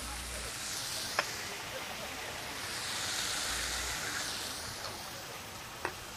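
Hot pans sizzling on the stove, where strip steaks are searing and a sugar-and-shallot sauce is cooking. A steady hiss swells a little around the middle, with a light click about a second in and another near the end.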